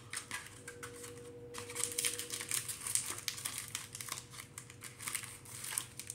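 Foil Pokémon card booster packs crinkling as they are handled, in a run of irregular crackles.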